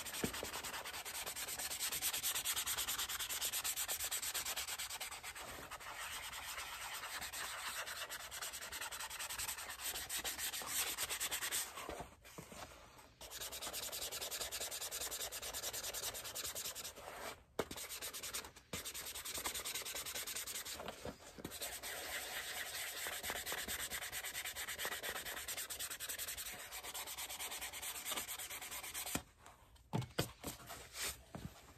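Leather upper of a boot being hand-sanded or rubbed with rapid back-and-forth strokes, making a steady scratchy hiss. It stops briefly a few times, most clearly about twelve seconds in and again near the end.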